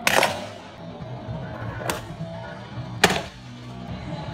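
Background music over three sharp clacks of a handboard, a hand-sized skateboard, hitting a hard countertop as tricks are popped and landed; the first clack, right at the start, is the loudest.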